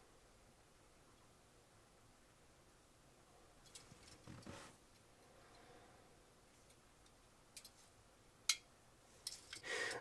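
Near-silent room tone with a soft rustle and a few faint, sharp handling clicks as gloved fingers hold a small diecast model car. The loudest click comes about eight and a half seconds in.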